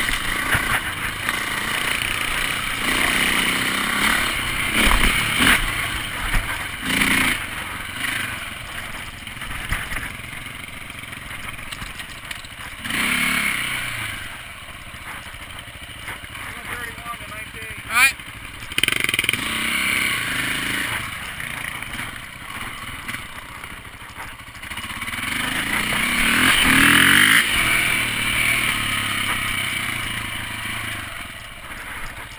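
KTM dirt bike engine running under way on a trail ride, revving up and easing off as the rider works the throttle, with a strong rev-up near the end. A single sharp knock about two-thirds of the way through.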